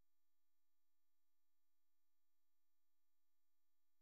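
Near silence: the sound track is essentially muted, leaving only a faint, steady, barely audible tone.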